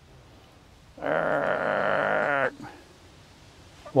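A hen giving one long, steady, drawn-out call of about a second and a half, starting about a second in. It is a begging call, taken for a hen begging for an egg.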